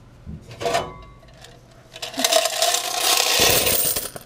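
A couple of knocks as a vending machine's coin box is handled, then about halfway in a loud jingle of many coins being poured out, lasting about two seconds.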